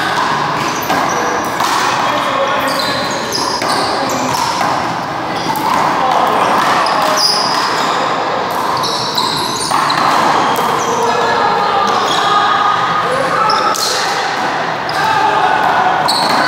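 One-wall handball play: a small rubber handball smacking off the wall and floor and being struck by hand, with repeated sharp hits, short high sneaker squeaks and indistinct players' voices.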